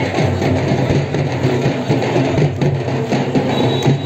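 Loud, dense music with a steady drum beat.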